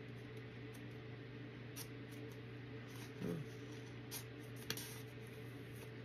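A few faint clicks and light rustles of a small paper card being pulled from its folded paper sleeve, over a steady low hum.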